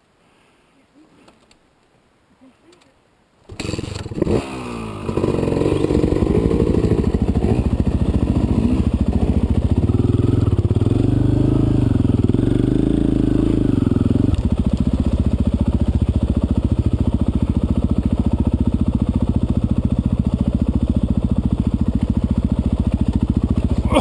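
Dirt bike engine starting about three and a half seconds in, after a quiet lull, then running loud and close. Its pitch rises and falls with the throttle as the bike is ridden over rough trail until about fourteen seconds in, then holds steady.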